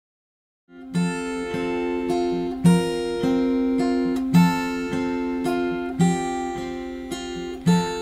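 Acoustic guitar playing a slow song intro. It comes in under a second in, with a chord sounded about every second and a half and left to ring.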